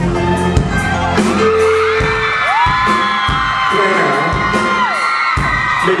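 Live pop-rock band with a male singer; the bass and low end drop back about two seconds in while a long held high note slides up, holds for about three seconds and falls away.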